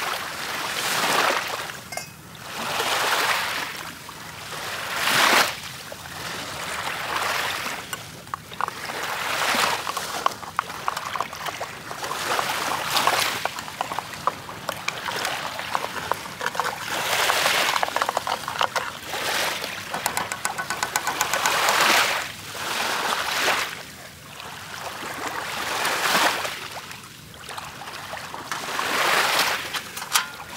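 Small sea waves breaking and washing up a pebble shore, a surge every two to four seconds that swells and fades, with a fine crackle of stones between surges.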